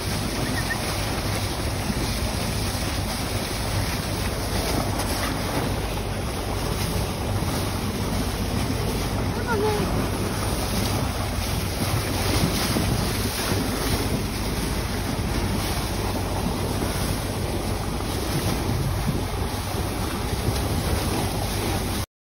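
Wind buffeting the microphone over the steady rush of water along the hull of a moving boat.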